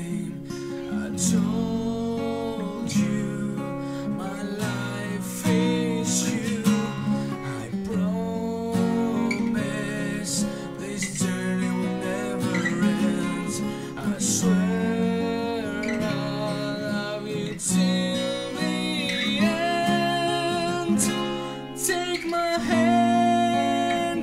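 Acoustic guitar music: strummed chords with a wavering melody line over them, before the vocals come in.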